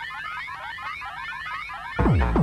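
Hardtek breakdown with the kick drum dropped out: a fast, high, alarm-like synth line of repeating rising pitch sweeps over a faint low bed. The pounding kick comes back right at the end.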